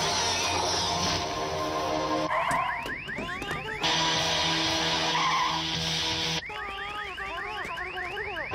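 Dramatic film-score music that twice breaks off for a second or two, letting through an electronic alarm: rapid, repeated rising chirps over a warbling tone.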